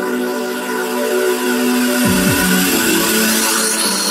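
House music in a breakdown with no kick drum: held synth chords, two falling bass sweeps about halfway through, and a hissing noise riser building toward the end.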